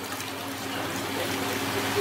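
Water splashing and streaming in a plastic tub as a large spiny lobster is handled and lifted by gloved hands. The splashing grows louder toward the end, over a steady low hum.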